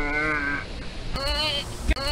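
A young person's voice making drawn-out cries that waver in pitch. One long cry fades out about half a second in, and a shorter one follows near the end.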